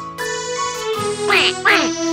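Children's song backing music with two short cartoon duck quacks, each falling in pitch, near the end.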